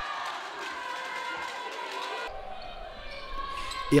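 Volleyball match sound in an echoing sports hall: spectators' voices and the noise of play on the court. The sound changes abruptly a little past halfway.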